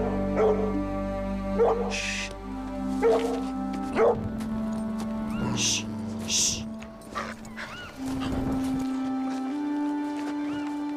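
A dog barking several times over held notes of a film score, with sharp barks in the first four seconds and fainter short yelps after.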